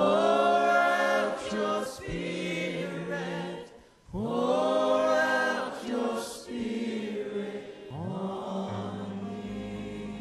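Church choir singing a slow worship chorus in long held phrases, with a short break about four seconds in and a new phrase starting about eight seconds in.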